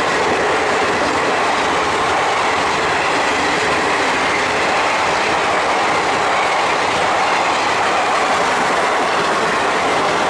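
Coaches of an Indian Railways express train passing at speed close by: a loud, steady rush of wheels running on rail.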